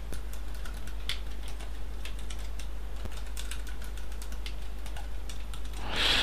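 Computer keyboard typing: a run of irregular key clicks over a low steady hum.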